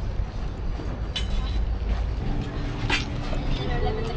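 Open-air market ambience: a steady low rumble with faint voices of people nearby, and two brief sharp clatters, one about a second in and one about three seconds in.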